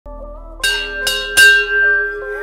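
A dinner bell rung three times in quick succession, each strike ringing on and fading, over soft background music.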